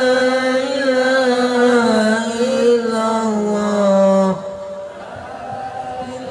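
A man chanting the adhan, the Islamic call to prayer, in long drawn-out melodic phrases; one held phrase ends about four seconds in and the next starts near the end.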